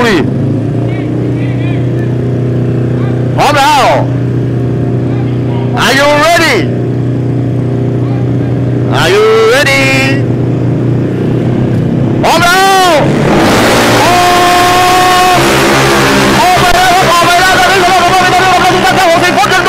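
Two tuned Yamaha X-Max 300 race scooters idling at the drag-strip start line, blipped to high revs four times, each rev rising and falling. About 14 seconds in they launch and run at full throttle, the engines holding a steady high pitch.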